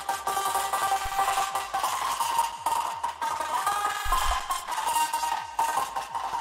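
Ambient processed vocal layer from a happy hardcore remix, played back alone: sustained tones pulsing in a steady rhythm from ShaperBox volume shaping.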